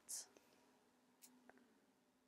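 Near silence: room tone, with a brief soft hiss right at the start and two faint ticks a little past a second in.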